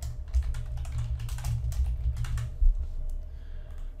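Typing on a computer keyboard: a quick run of keystrokes entering a short two-word phrase, stopping about three seconds in.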